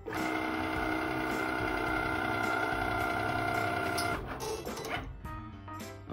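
Cricut cutting machine's feed motor whining steadily as it drives the long cutting mat through the rollers, stopping about four seconds in.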